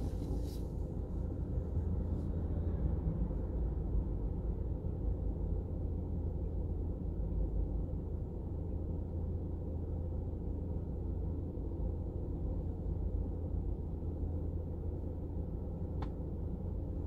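Steady low rumble inside a car's cabin while it waits stopped in city traffic.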